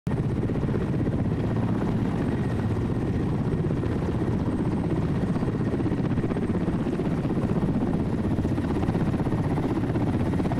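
Helicopter running close by, its rotor and engines giving a steady, rapid beat that does not change in level.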